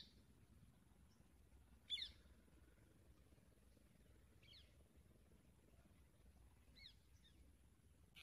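Near silence with a few short, faint, high chirps, about two seconds apart: a bird calling.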